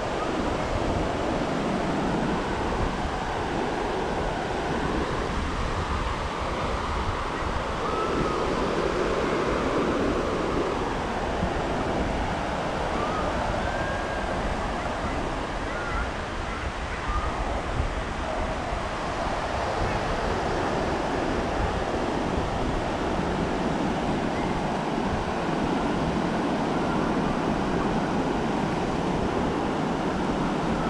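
Ocean surf washing steadily onto a sandy beach, with wind rumbling on the microphone.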